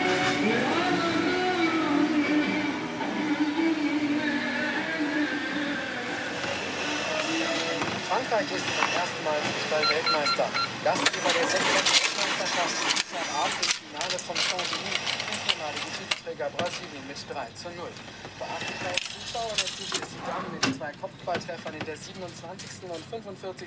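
Music for the first few seconds, giving way to indistinct voices with scattered sharp clicks and knocks, clustered about halfway through and again near the end.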